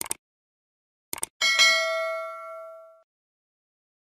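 Subscribe-animation sound effect: a short click, then two quick clicks about a second in, followed by a single notification-bell ding that rings out and fades over about a second and a half.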